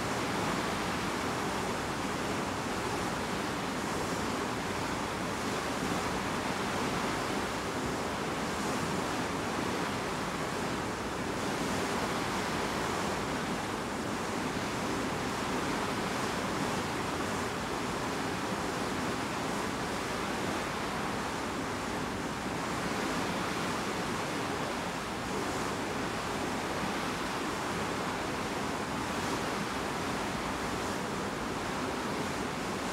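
Bow wave of a large ship rushing and splashing steadily as the hull cuts through the sea.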